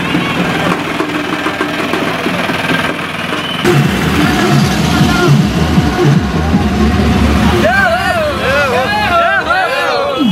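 Procession noise: crowd and drumming at first, then a low engine rumble from a few seconds in, and a group of voices shouting a repeated chant near the end.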